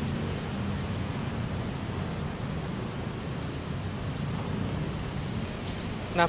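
Steady outdoor background noise at a riverbank: an even hiss over a low rumble, with no distinct events.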